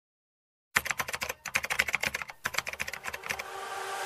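Computer keyboard typing: a quick run of key clicks lasting about two and a half seconds, broken by two short pauses, then a rising swell of noise near the end.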